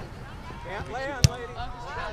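Indistinct talking voices around the camera, with one sharp knock or thump about a second in.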